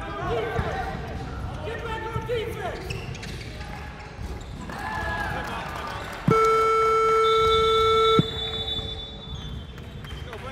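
Basketball game sounds: a ball bouncing on the hardwood floor and sneakers squeaking. About six seconds in, a loud steady electronic scoreboard buzzer sounds for about two seconds and cuts off abruptly.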